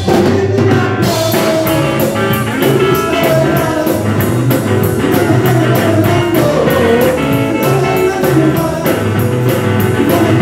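Live band playing a song: a singer over electric guitar and drum kit, with a steady cymbal beat. The cymbals are out for the first second and come back in about a second in.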